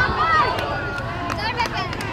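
A group of girls talking and calling out together, several young voices overlapping, with a few short knocks or clicks.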